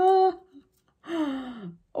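A woman's two short wordless vocal sounds, the second longer and falling in pitch, made with effort while peeling a sticker off a perfume bottle.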